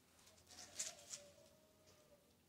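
Near silence, with two faint short rustles a little under a second in, as a hand rubs a dog's wet coat.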